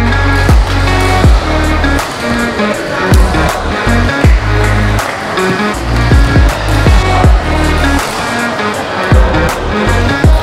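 Electronic background music with heavy bass and a steady kick-drum beat.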